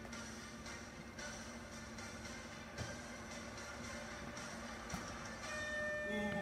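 Background music from a countdown timer, with a couple of faint knocks, and a steady high tone sounding near the end as the timer reaches zero.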